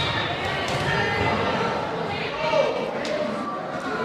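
Spectators chattering and calling out in an echoing school gymnasium, with a few faint thuds from the court.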